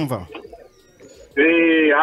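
Speech: a voice trails off, sliding down in pitch, then a short pause, then a long held vowel as talking resumes.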